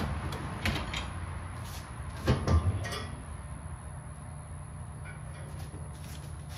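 Metal knocks and clicks from beef ribs being laid on a barrel smoker's cooking grate, with a louder clunk about two and a half seconds in.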